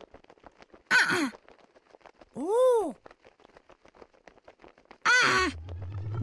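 Voice-like cartoon sound effects over faint rapid ticking. About a second in comes a short sound sliding down in pitch, then one that rises and falls in pitch, and near the end a noisier burst with a falling pitch.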